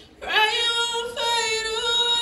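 A woman singing solo into a microphone: after a short breath her voice slides upward into a new sung phrase, over a steady held backing tone.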